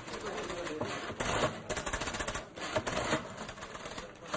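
Electromechanical office adding machines clattering, a dense, irregular run of rapid key clicks and mechanical rattles. It is the machine noise that makes the office impossible to work in.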